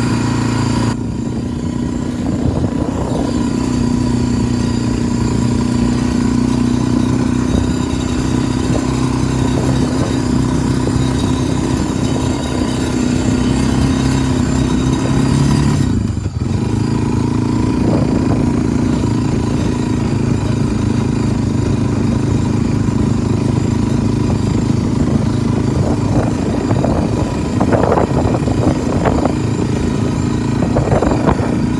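Old Honda four-wheel-drive ATV's single-cylinder four-stroke engine running at a steady speed while riding, with a brief drop in engine speed about sixteen seconds in before it picks back up. A few knocks and rattles near the end.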